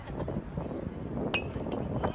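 A single sharp metallic ping with a short ringing tail about a second and a half in, the sound of a metal baseball bat striking the ball, over steady background noise.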